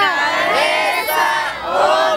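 A group of people shouting and calling out together, many voices overlapping with rising and falling pitch.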